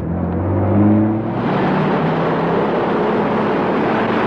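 Engine of a minivan pulling away, its pitch rising over the first second or so as it speeds up, then running steadily.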